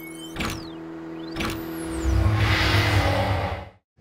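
Produced intro sting of synthesized sound effects: a held tone, two sharp hits about a second apart with sweeping pitch glides, then a swelling whoosh over a deep rumble that cuts off suddenly just before the end.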